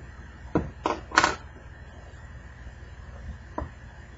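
Sharp plastic clicks and snaps from an HTC Droid Incredible's plastic frame and its clip-in tabs as it is handled and pried apart: three in the first second and a half, the loudest about a second in, and a fainter one near the end, over a steady low hum.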